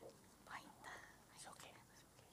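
Near silence in a quiet hall, with faint whispering.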